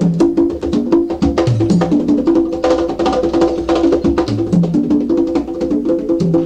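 Live jazz quintet playing uptempo: electric bass repeating a short low figure about every second and a half, under held mid-range notes and busy drums and hand percussion with sharp, wood-block-like clicks.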